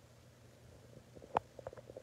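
Haircutting scissors snipping through a section of wet hair: one sharp snip about a second and a half in, then a few lighter clicks of the blades.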